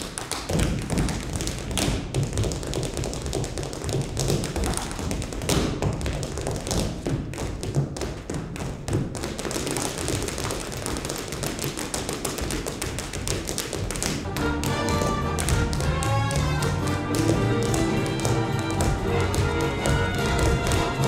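Rhythm tap dancing: the metal taps of several dancers' tap shoes striking the floor in fast, dense, syncopated patterns with heavier heel drops. About two-thirds of the way through, music with sustained notes joins the taps.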